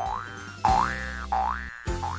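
Cartoon 'boing' sound effect repeated three times, each a springy rising glide, about two-thirds of a second apart, over light background music.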